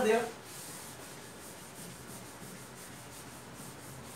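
Blackboard duster wiping chalk off a chalkboard: a steady, faint rubbing hiss of repeated strokes.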